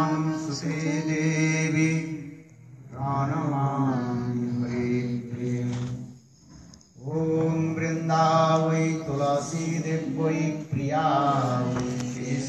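A man chanting a devotional prayer into a microphone in long phrases with held notes, with short breaks for breath about two and a half and six and a half seconds in.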